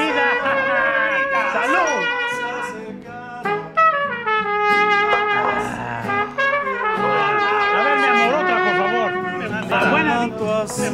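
Mariachi trumpet playing a melody, with a long falling run of notes starting about three and a half seconds in.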